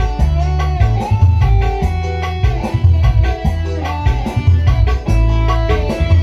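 Recorded music with a strong, pulsing bass line, played from a phone through a mixing console and loudspeakers as a per-channel test of the mixer.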